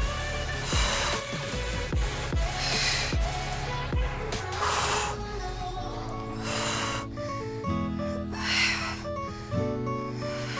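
Background workout music with a steady beat, and a woman's sharp breaths about every two seconds, five times, in time with her side-crunch reps.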